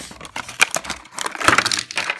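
Plastic blister pack and cardboard backing card of a die-cast toy car being torn open and crinkled by hand: irregular crackling and tearing, busiest about a second and a half in.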